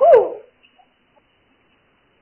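A child's voice over a telephone line: a short vocal sound falling in pitch, ending about half a second in, then the line goes nearly silent.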